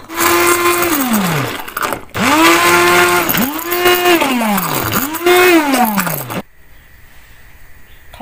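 Handheld immersion blender puréeing a pot of cooked red beans, oats and water, run in four pulses: each a steady motor whine that falls in pitch as the motor winds down when released, the last ending about six and a half seconds in.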